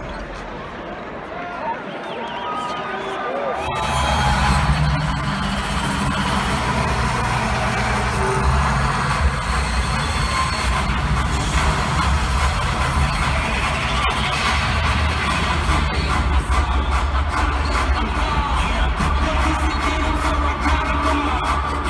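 Arena crowd noise, then loud music with a heavy bass line starts abruptly over the PA system about four seconds in and carries on over the crowd: the build-up music for the home team's starting-lineup introduction.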